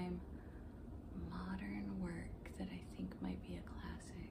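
A woman speaking softly under her breath: a few quiet murmured words or a thinking "hmm", well below her normal talking voice.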